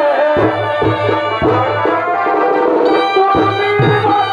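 Traditional chhau dance accompaniment: drum strokes, some close together, under a sustained wind-instrument melody, played loud.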